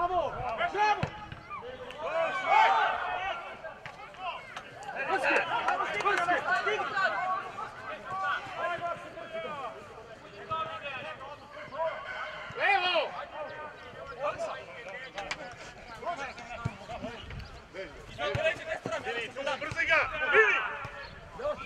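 Footballers and spectators shouting and calling out during play, several voices overlapping and coming and going throughout.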